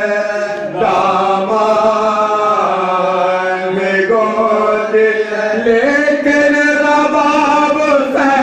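A group of men chanting a marsiya, an Urdu elegy for the martyrs of Karbala, unaccompanied. They hold long, drawn-out notes that step to a new pitch about a second in, around four seconds in and near six seconds.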